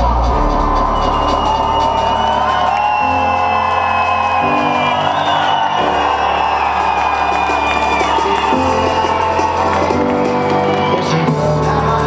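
Live electronic music played loud through a club PA, with a deep bass line that steps to a new note every second or two, and the crowd whooping and cheering over it.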